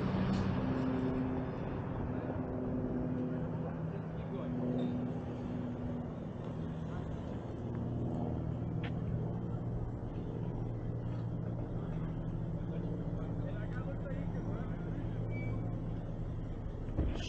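Motor vehicle engine running slowly and steadily with a low, even hum, as a car moves in at walking pace.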